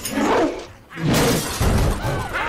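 Film soundtrack action: two loud crashing, breaking impacts. The first is short and the second, about a second later, is longer and heavier in the low end.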